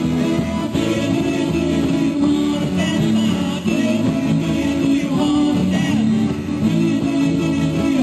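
Live bar band playing rock and roll, with guitar and drums under a singer.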